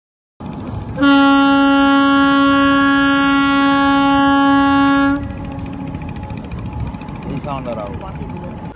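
Paddle steamer's horn sounding one long, steady blast of about four seconds, starting about a second in and stopping suddenly, over riverside background noise.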